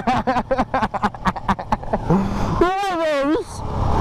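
A man laughing in a quick run of short bursts for about two seconds, then a drawn-out vocal cry, over the steady running noise of a motorcycle on the road.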